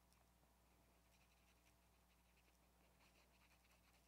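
Near silence, with faint scratching of a glitter brush marker's brush tip stroking and blending ink across card paper.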